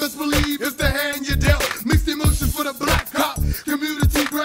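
Hip-hop track playing: rapped vocals over a beat with deep, regularly repeating bass hits.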